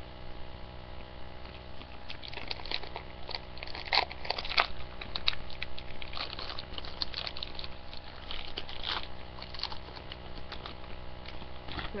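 Crinkling and tearing of a packet of My Chew peach candy being opened by hand: irregular crisp crackles that start about two seconds in and go on almost to the end, loudest around the fourth and fifth seconds.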